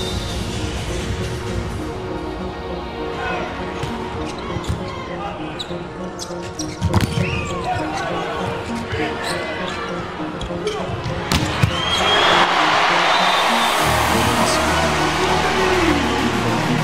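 Volleyball being struck hard during a rally, with sharp hits about seven seconds in and again around eleven seconds, over crowd noise in a large arena. The crowd swells into loud cheering from about twelve seconds as the point is won.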